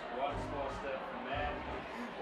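Indistinct voices talking over music with a low bass line.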